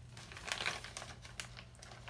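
Crinkling and rustling of packaging being handled, with a short crinkle about half a second in and a sharp click later on.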